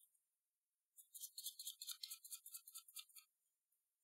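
A deck of tarot cards being shuffled by hand: a faint, quick, even run of papery flicks, about seven a second, starting about a second in and stopping a little after three seconds.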